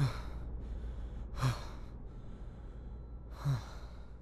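A man's harsh, gasping breaths, three of them about two seconds apart, over a low steady hum.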